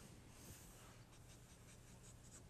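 Near silence with a few faint, short strokes of a felt-tip marker on paper as a dashed line is drawn.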